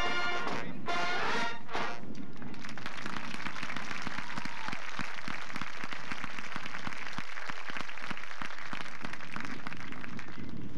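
Marching band brass finishing a piece with a couple of short chords, the music stopping about two seconds in. It is followed by steady applause from the crowd.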